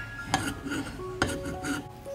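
A few sharp clacks and clatters of chopped beef rib pieces being handled: one about half a second in, then three close together in the second half. Soft background music runs under them.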